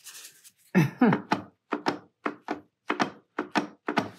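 A woman laughing: a run of short voiced bursts, about three a second, starting about a second in and tapering off.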